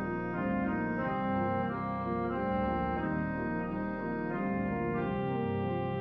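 Church organ playing full sustained chords that change about once a second over held low bass notes.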